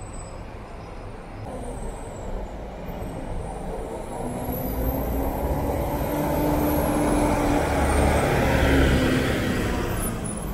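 A city bus approaches and drives past close by. Its engine drones louder and louder over several seconds and is loudest near the end as it goes by.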